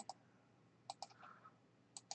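Faint computer mouse clicks: a close pair of short clicks about a second in and another click near the end, over near silence.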